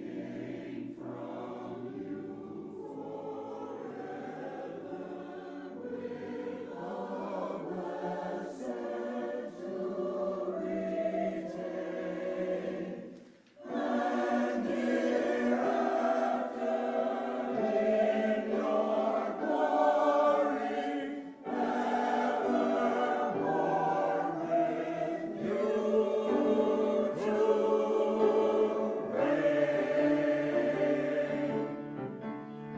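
Mixed adult church choir singing. It sings softer for the first half, breaks off briefly about halfway through, then comes back in louder.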